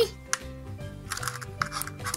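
Background music, with a few sharp clicks and a brief rustle from a plastic Kinder Surprise toy capsule being pried open by hand.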